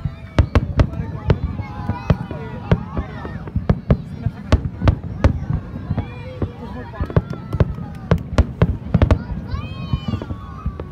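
Aerial fireworks shells bursting in a rapid, irregular series of sharp bangs, several a second at times, with people's voices between them.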